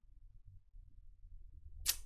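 Faint room tone with a low hum, broken near the end by a brief burst of a woman's voice, a short laugh or breath just before she speaks.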